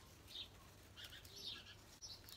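Near silence outdoors, with a few faint, short bird chirps in the background.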